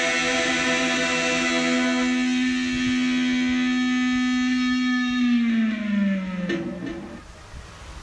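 Electric guitar holding one long sustained note; about five seconds in the pitch slides down and the note dies away, with a couple of faint clicks near the end.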